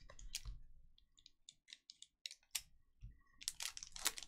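Foil trading-card pack being torn open and handled: faint scattered crinkles and ticks, turning into denser, louder crackling near the end.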